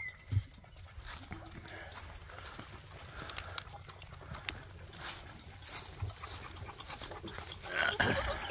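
Goat kids crowding around teat feeding buckets: faint, scattered small clicks and rustling, with a single knock just after the start.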